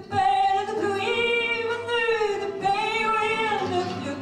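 A woman singing a French song into a microphone, holding two long sung notes one after the other.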